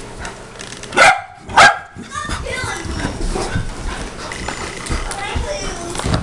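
A dog barks twice, loudly and about half a second apart, about a second in, while two dogs play.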